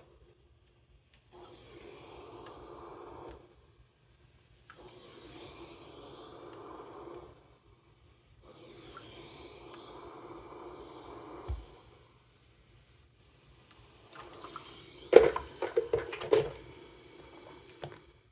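A steam iron pressed and pushed over quilt fabric on a wool pressing mat in three strokes of two to three seconds each. Near the end there is a cluster of sharp clicks and snips as loose threads are trimmed with scissors.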